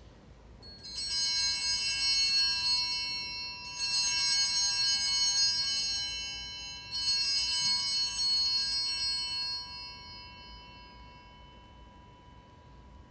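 Altar bells rung three times at the elevation of the consecrated host: three shaken peals of several high bells, about three seconds apart, each ringing on as it fades.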